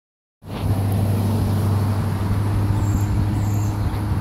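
A motor engine running steadily with a low hum, with two short faint high squeaks in the second half.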